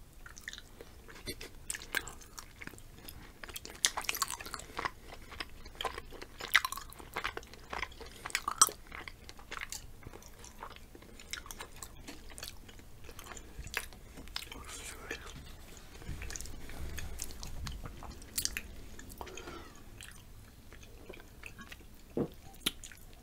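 Close-miked chewing and crunching of chocolate-covered potato chips. Crisp crunches come thick and fast in the first half, then give way to softer chewing.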